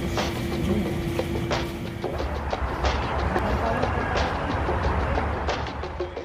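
Busy restaurant room noise: voices chattering and dishes and cutlery clinking over background music, with a low steady rumble.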